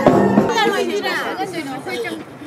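Music with sustained tones and drum strikes cuts off about half a second in, giving way to several people talking at once.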